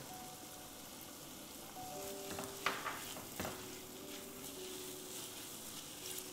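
Diced vegetables sizzling as they fry in hot oil in a pot, stirred with a wooden spatula, with a few sharp clicks of the spatula against the pot in the middle.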